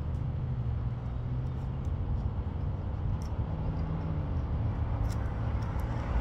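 Steady low rumble of motor traffic on a nearby road, with a few faint clicks over it.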